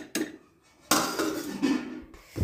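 Stainless steel kitchenware clinking: a slotted spoon and a steel lid knocking against a steel cooking pot, two sharp clinks at the start, then a brief pause and a second of noisy handling.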